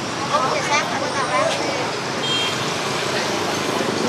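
Steady roadside traffic noise with faint background voices of people talking, mostly in the first second and a half.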